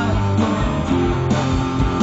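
Live rock band playing a guitar-led passage with bass and drums and no singing, over a steady beat.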